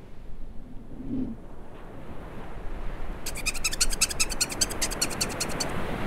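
Ocean surf sound that swells steadily. About halfway through, a rapid, high-pitched chattering trill plays over it for about two seconds.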